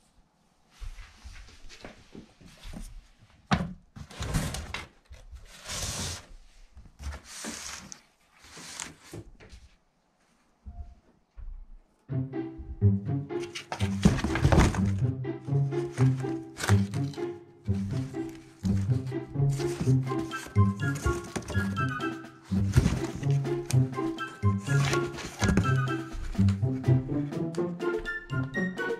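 Cardboard rustling, scraping and thumping in short irregular bursts for the first ten seconds or so, then light background music with a steady beat from about twelve seconds in, louder than the cardboard noises.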